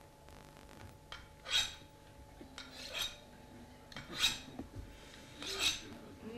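Knives drawn along sharpening steels in slow, separate rasping swipes, about five of them, one every second and a half or so.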